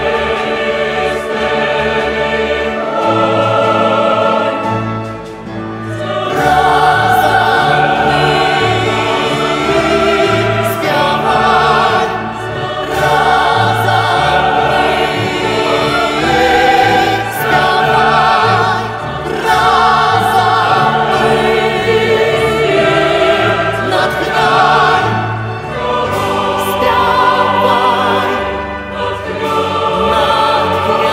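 A large mixed choir sings a solemn anthem in sustained phrases over symphony orchestra accompaniment. The music grows fuller and louder about six seconds in.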